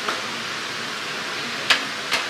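Steady hiss of shop-interior background noise, with one short sharp click near the end.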